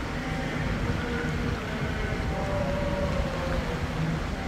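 A steady low rumble of street traffic, with a group of clergy faintly chanting a hymn in long held notes above it.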